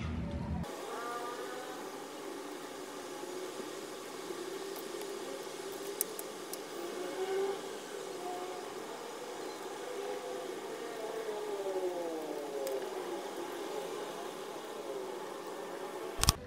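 An edited-in whirring sound effect with several tones slowly gliding up and down, captioned as the sound of a brain and eyeballs working hard.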